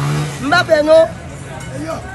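A man's voice: a held vowel, then a few spoken syllables, followed by a short lull with faint background noise.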